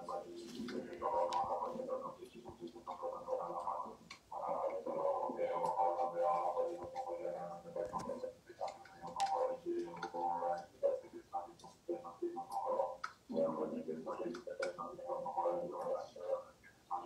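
A large assembly of Tibetan Buddhist monks chanting, played through a laptop over a Zoom screen share. The chant sounds robotic and breaks up, with clicks and short dropouts, as the stream stutters.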